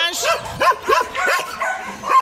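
Dogs barking: a quick run of short barks from dogs in their kennels.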